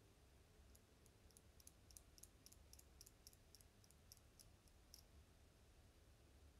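Near silence broken by a run of faint, quick clicks, about four a second for some four seconds, from a metal eyelash curler being squeezed and released against the lashes.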